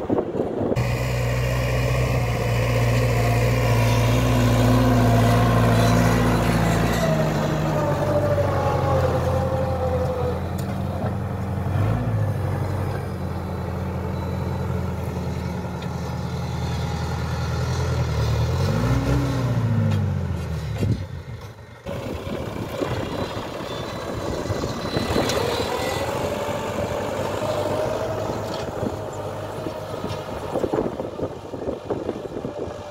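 Farm tractor's diesel engine running under load as it pulls a disc ridger through the soil, its note falling a few seconds in and briefly dipping and swelling twice. After a sudden break about two-thirds of the way through, a rougher, noisier stretch of engine sound follows.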